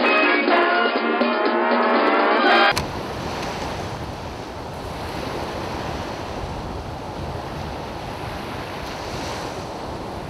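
Thin, tinny music, as from a small radio, cuts off abruptly about three seconds in, leaving a steady rush of sea waves and wind.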